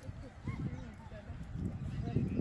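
Indistinct chatter of several people talking, no words clear.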